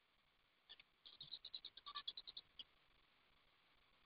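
A faint, quick run of about a dozen short, sharp clicks lasting about a second and a half, with a single click just before it and another just after.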